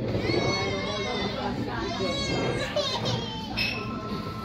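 A child's high-pitched voice in long wavering cries, the first about two seconds long and a shorter one near the end, over people talking in the background.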